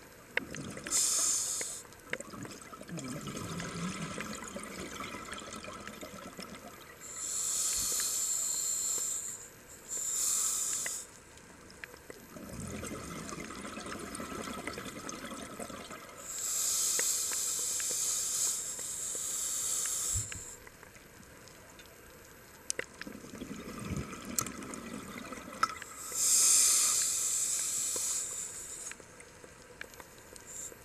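Scuba diver breathing through a regulator underwater: hissing breaths alternate with lower bubbling exhalations, about one breath cycle every nine or ten seconds.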